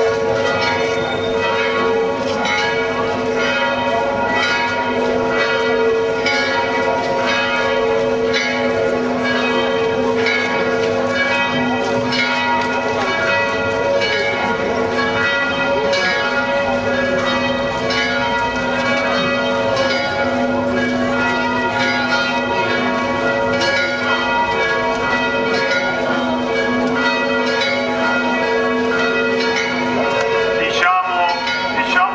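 Church bells ringing continuously in a festive peal, stroke after stroke, each strike leaving a sustained ringing tone.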